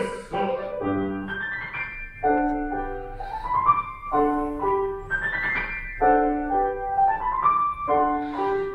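Piano playing rising arpeggio-like figures over and over, a rehearsal accompaniment with the voices resting.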